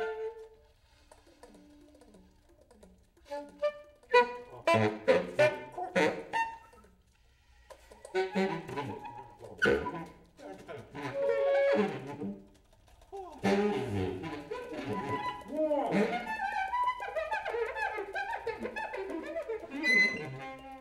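Saxophones playing avant-garde free improvisation: short, broken phrases with sharp attacks, separated by near-quiet gaps. The densest, loudest playing comes about four to six seconds in and again from about thirteen seconds on.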